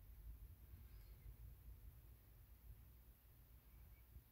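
Near silence: faint room tone with a low hum.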